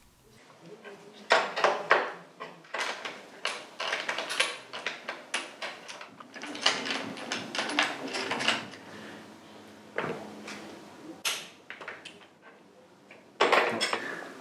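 Irregular metallic clinks and knocks of a spanner working on a motorcycle's rear axle, with the loudest knocks near the start and near the end.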